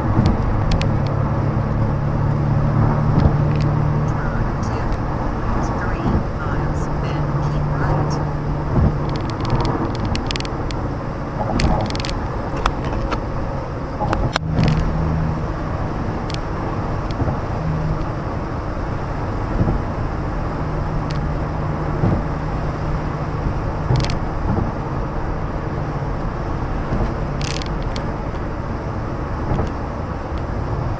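Steady engine and tyre drone of a car cruising at freeway speed, heard from inside the cabin, with a low hum that comes and goes and a few brief clicks.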